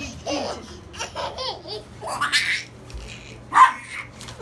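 A baby laughing in short bursts, with a louder peal of laughter about halfway through and another near the end.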